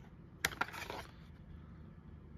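Plastic blister pack and card of a diecast toy car being handled and turned over: one sharp click about half a second in, then a few faint ticks.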